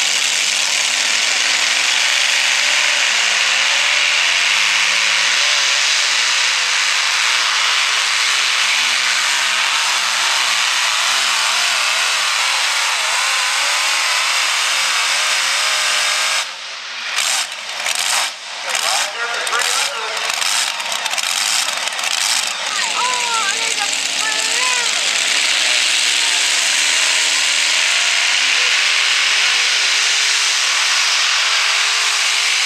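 Multi-engine modified pulling tractor's supercharged engines running at full throttle under load down the pull track, loud and steady with a wavering pitch. The sound drops out briefly several times in the middle before the full roar returns.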